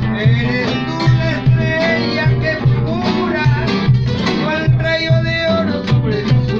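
A man singing a Peruvian vals criollo to his own classical guitar, the guitar strummed in steady waltz rhythm with a pulsing bass line under the voice.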